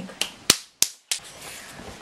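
Four sharp clicks, roughly a third of a second apart, with the sound dropping almost to silence between them.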